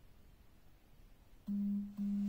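Near silence, then about one and a half seconds in a steady, low, pure tone starts suddenly and holds.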